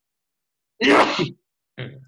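A person sneezing once, a loud sudden burst lasting about half a second, about a second in, followed by a shorter, quieter sound near the end.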